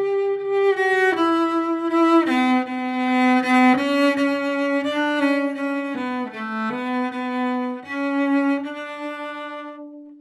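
Solo cello played with the bow, improvising a slow line of sustained notes that change about once a second, with a few sliding pitch changes between them. The last note fades away near the end.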